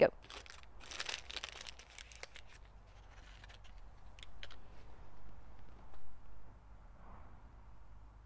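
A paper seed packet being torn open and handled: a run of crinkling, tearing rustles in the first two seconds or so, then softer, scattered paper rustles as seeds are tipped out.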